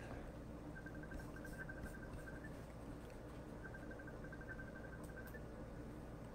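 Faint room tone: a steady low hum with a few short runs of rapid, faint high ticking.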